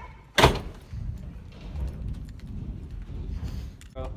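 A door bangs shut once, about half a second in, followed by low, muffled movement noise.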